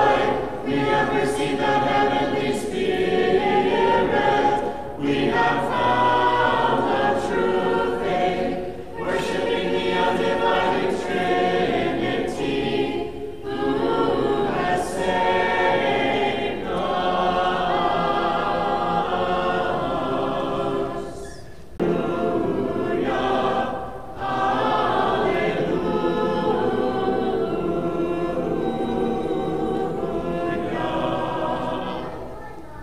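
Small mixed church choir singing an unaccompanied Orthodox liturgical hymn, phrase after phrase with brief breaks between them.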